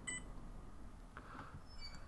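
Faint, brief electronic beeps from a handheld barcode scanner reading a bin-location barcode: one just after the start and another near the end.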